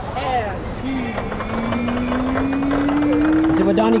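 A puck clattering down the pegs of a plinko-style prize-drop board in a rapid, irregular run of small ticks. A single clean tone rises slowly in pitch behind it, and voices can be heard close by.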